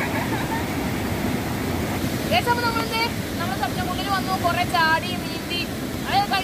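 A stream rushing white over rocks, a steady noise. A person's voice comes in over the water about two seconds in and runs on to the end.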